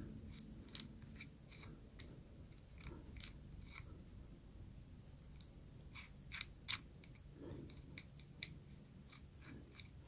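Faint, irregular clicks and ticks of a small Master Lock combination padlock's dial being turned by hand, with light upward tension on the shackle to feel for the stuck position that reveals the first number of the combination.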